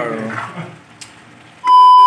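Loud, steady high-pitched test-tone beep, the TV colour-bars 'no signal' sound effect, cutting in about a second and a half in as an edit transition.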